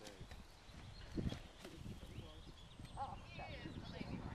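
Horse getting up from a roll in arena sand, with a dull thud about a second in.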